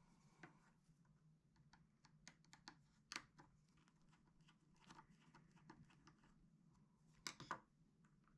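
Faint small clicks and scrapes of a precision screwdriver turning a tiny screw in a plastic cover plate, with a couple of louder clicks near the end as the screwdriver is set down on the table.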